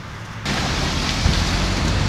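Steady road traffic noise, an even hiss with a low rumble beneath, cutting in abruptly about half a second in.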